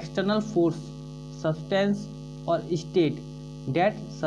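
Steady electrical mains hum, a set of even tones running throughout, under a man's voice speaking in short bursts.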